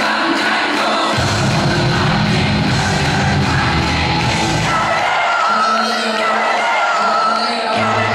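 Pop song with singing played loud through a concert hall's sound system; a heavy bass line comes in about a second in and drops out around five seconds, returning near the end.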